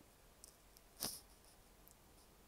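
Near silence: faint room tone, with one brief sharp click about a second in.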